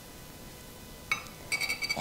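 Metal kitchenware clinking against a stainless steel saucepan: one sharp, ringing clink about a second in, then a quick run of ringing clinks near the end.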